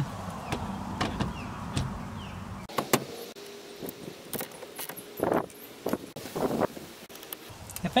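Scattered clicks and knocks of hands and tools on a car's steering wheel as it is fitted back on the column and its nut is tightened with a ratchet on a long extension. Two short rasps near the middle.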